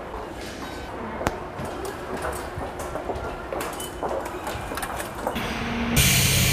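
Automatic ticket-gate flap doors snapping shut with a sharp clack about a second in, over a background hum of station noise and small clicks. Near the end the background changes to a brighter hiss.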